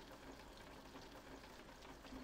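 Near silence: a faint, steady hiss of rain.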